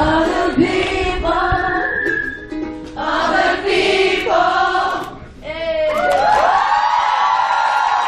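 A crowd of fans singing a song together without accompaniment, in phrases with short breaks about three and five seconds in. Many voices overlap near the end.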